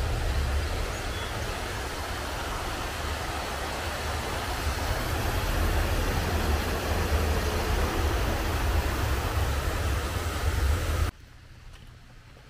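Steady rushing water from a small rocky waterfall and stream, with wind rumbling on the microphone; it cuts off suddenly near the end.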